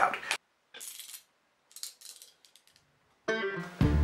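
Faint brief crackling of a mylar foil bag being torn open, in two short patches separated by dead silence. Background music comes in about three seconds in and becomes the loudest sound near the end.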